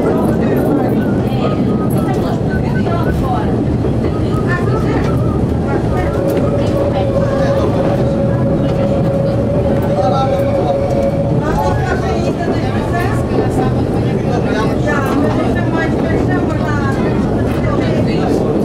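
CP 9500-series diesel railcar running along metre-gauge track, heard from the front cab: a steady engine drone mixed with wheel-on-rail rumble. A steady high whine joins in for about five seconds in the middle, while the track curves.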